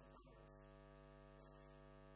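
A single musical note held steady and unwavering, setting in just after the start, over a constant low electrical mains hum.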